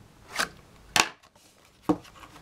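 A mouse's cardboard-and-plastic retail box being opened by hand: a short rustle, then two sharp clicks about a second apart.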